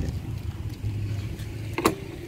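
A low steady hum, then one sharp click near the end: a latch on a Honda PCX 160 scooter snapping open.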